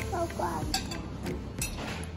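Metal cutlery clinking against a plate, a few sharp clinks.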